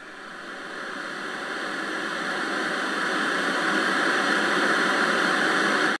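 A steady rushing noise swelling louder over the first few seconds, then cutting off suddenly at the end.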